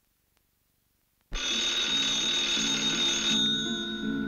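A telephone bell rings once, starting suddenly about a second in and lasting about two seconds, over music with a repeating pattern of low notes that carries on after the ring stops.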